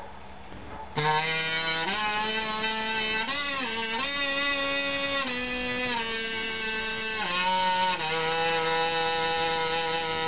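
Handmade wooden FatBoy kazoo, still in its roughed-in state, hummed through a high-low sound test of its range and control. A buzzy tone starts about a second in and moves in held steps between a low note and several higher ones, dropping back low a little past the middle before rising again.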